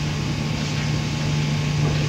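Steady low hum over an even hiss: the background noise of a large hall.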